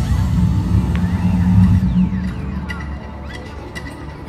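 Amplified soundtrack of an outdoor light-projection show: a loud, deep bass drone with sweeping whooshes. The drone drops away about halfway through as the projected scene changes.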